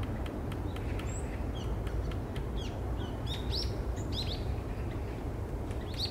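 Small wild birds giving short, high chirps and quick rising calls, with a run of sharp ticks in the first couple of seconds, over a steady low background rumble.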